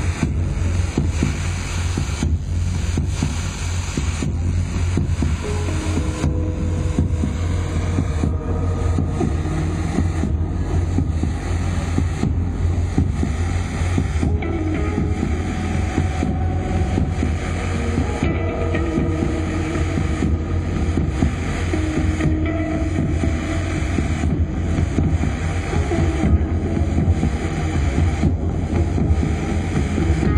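Loud live experimental post-punk or new-wave music heard through a pocket camera's microphone: a heavy, steady bass drone with slow wavering tones above it and no clear beat.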